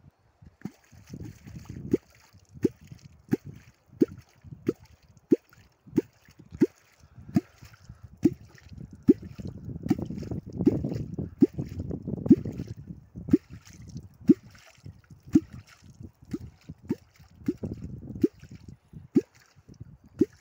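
Metal catfish kvok being struck into the water over and over, giving a short, low bubbling plop about every 0.7 seconds. The strokes are splashier through the middle stretch.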